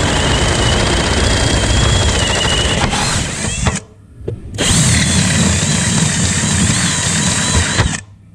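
Power drill running in two long bursts, with a break of about a second near the middle, as it enlarges a hole through a vehicle's firewall. A steady whine rides over the cutting noise.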